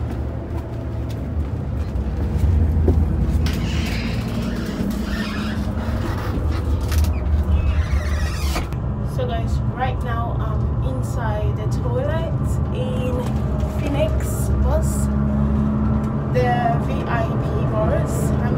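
Steady low rumble of a coach bus on the road, heard from inside the bus.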